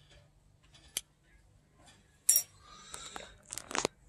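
Faint handling sounds of steel tweezers setting a small gold bead on the metal pan of a pocket digital scale: a single sharp click about a second in, a brief louder scrape just past two seconds, then light scratching and small clicks.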